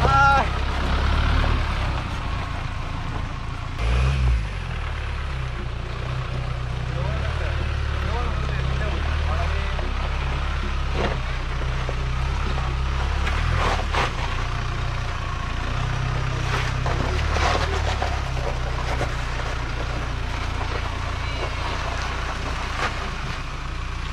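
Mahindra Thar's diesel engine running at low speed as the jeep crawls over a rough dirt and rock trail, with a brief louder surge about four seconds in.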